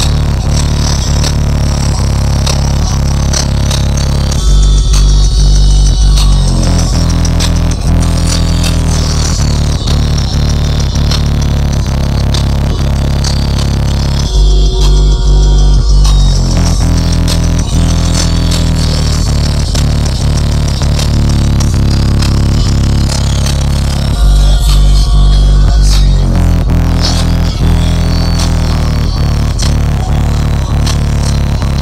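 Music with heavy bass played loud through a car audio subwoofer system, heard inside the car's cabin. The deep bass is loudest in three short bass-only drops about ten seconds apart.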